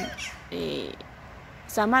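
A crow cawing once, about half a second in.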